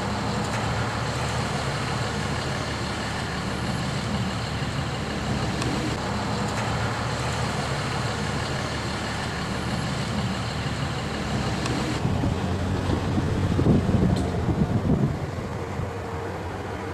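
A large engine running steadily, with a pitched low hum. About twelve seconds in its sound changes and grows louder and more uneven for a couple of seconds before settling.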